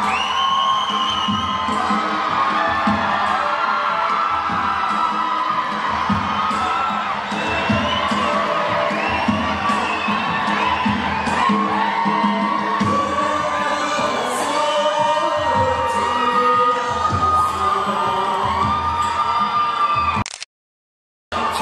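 Audience cheering and shouting over loud dance music with a low, steady beat.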